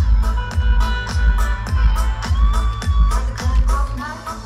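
Live electronic dance music played loud over a concert PA, heard from within the crowd. A steady pounding bass beat runs through it, and a long lead note slides up and is held from about halfway through. The music drops back briefly near the end.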